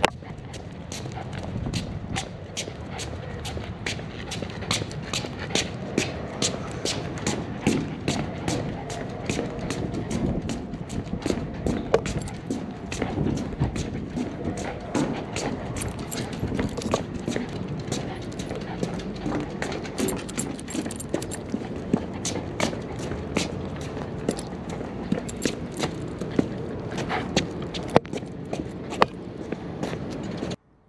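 Running footsteps of a person jogging with a dog over paving and a wooden deck: a quick, regular patter of steps, about two to three a second, over a low rumble of movement on the microphone.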